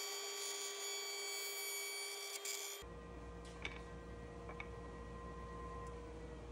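Spindle shaper running with a lock miter bit as a board is pushed past it, heard faintly as a steady motor whine. About three seconds in the tone changes abruptly to a lower, steadier one with a few faint ticks.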